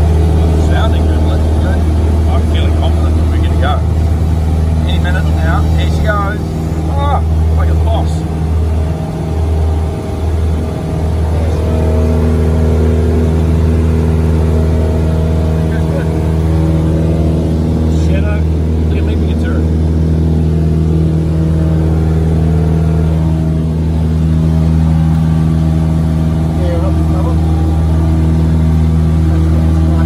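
Single-engine piston light aircraft's engine and propeller running at takeoff power through the takeoff roll and climb-out: a steady drone heard from inside the cockpit. Brief snatches of voice come through in the first few seconds and again about eighteen seconds in.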